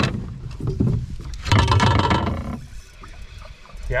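Knocks and handling noise in an aluminum canoe as a wooden paddle is laid down and a spinning rod picked up, with a louder burst of noise lasting about a second near the middle.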